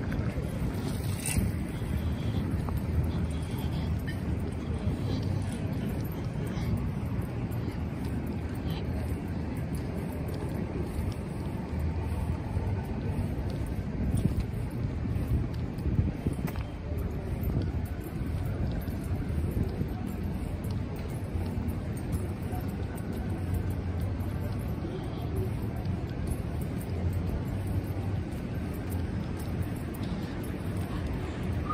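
City street ambience: a steady rumble of road traffic, with wind buffeting the microphone of a handheld camera being walked along the sidewalk.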